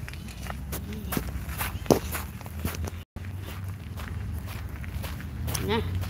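Footsteps crunching on loose gravel, a quick run of short scrunches over a low steady rumble, with one louder scuff about two seconds in.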